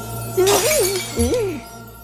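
Cartoon sound effect of glass shattering, a sudden crash about half a second in, with a wavering pitched sound over it and background music underneath.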